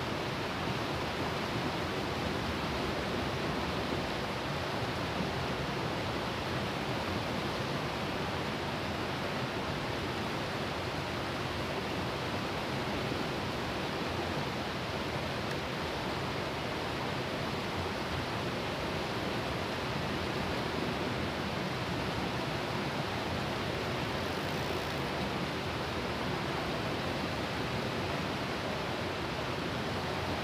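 Steady rush of a fast-flowing river running over rocks and small rapids, an even, unbroken noise.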